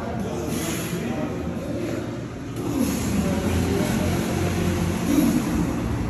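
Plate-loaded metal push sled being driven along a concrete floor: a continuous low rumble.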